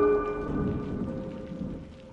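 Rain falling with a low thunder rumble as the last ringing mallet-percussion notes fade away; one soft held tone lingers.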